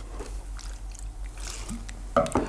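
Methylated spirit tipped from a plastic bottle into a cotton wool pad, with a faint trickle and the rustle of the bottle and pad being handled.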